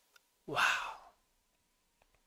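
A man's single soft, breathy 'wow', close to a sigh, lasting about half a second.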